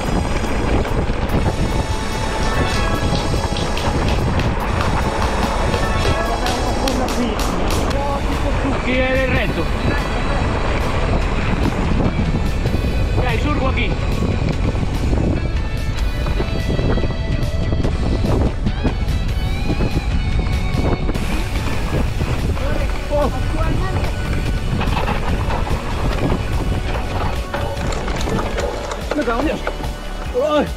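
Wind rushing over an action camera's microphone and a mountain bike rattling along a rough dirt track, steady and loud, with music audible over it.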